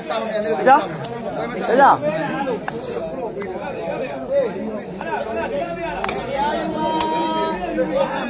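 A crowd of spectators chattering and calling out, many voices overlapping. Two sharp knocks come about six and seven seconds in.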